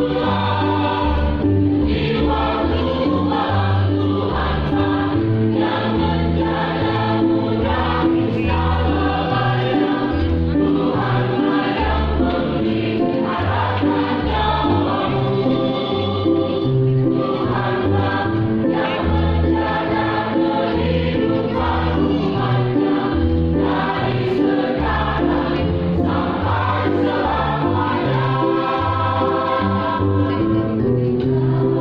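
Mixed choir of men and women singing a gospel song together in parts, steady and continuous.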